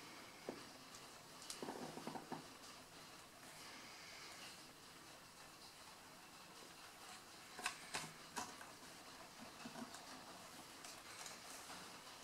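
Faint clicks and taps of a guitar pickup and its hardware being handled on a wooden guitar body: a short run of small ticks about two seconds in and a few sharper clicks about eight seconds in, over quiet room tone.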